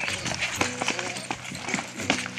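A scuffle on paving: rapid footfalls and thuds as people grapple and wrestle someone to the ground, with brief shouts and grunts.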